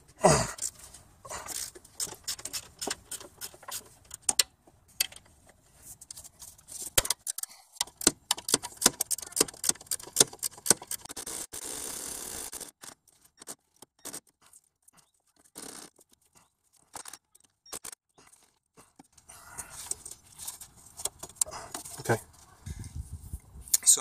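A hand ratchet clicking in bursts, with clinks of sockets and metal tools, as the accessory drive belts of a Toyota 3MZ-FE V6 are loosened; a brief scraping rush about halfway through. A short laugh at the very start.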